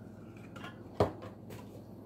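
A single sharp click about halfway through as the refrigerator door is handled, over a faint steady low hum.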